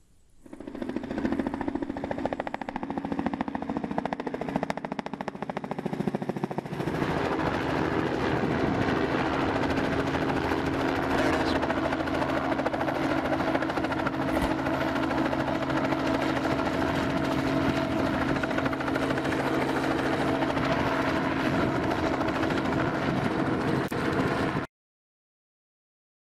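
Helicopter rotor chop and engine running, with a slowly falling tone in the first few seconds. The chop grows louder about seven seconds in and then holds steady as the helicopter hovers.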